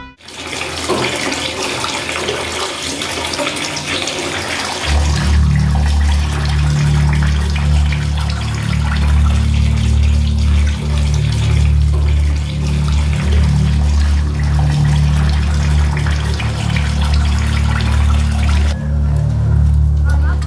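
Water running and splashing, with a low, heavy music drone coming in about five seconds in and carrying on beneath it; the water sound drops away just before the end.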